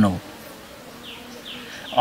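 A flying insect buzzing faintly, with three short, high, falling chirps in the second half.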